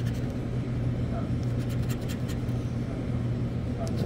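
A steady low hum over background noise, with faint, intermittent scraping as a scratch-off lottery ticket's coating is rubbed off with a small hard tool.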